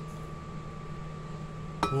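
Quiet kitchen room tone with a faint steady hum. Near the end there is a single light clink as a metal measuring cup touches the rim of a glass blender jar.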